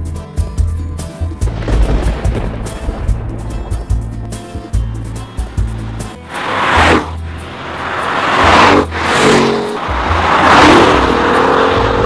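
Background music with a heavy bass beat. From about six seconds in, a Jaguar XF-R's engine and tyres are heard driving past, swelling and fading about three times with the engine note sliding in pitch.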